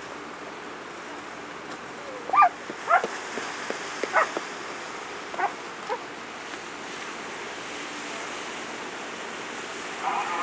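A dog barking in a run of about six short barks between about two and six seconds in, over a steady wash of surf.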